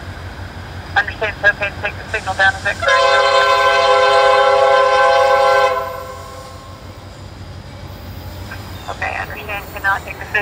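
Locomotive air horn sounding one long, steady multi-tone blast of about three seconds, starting about three seconds in, as the train approaches the grade crossing. A low rumble lies underneath.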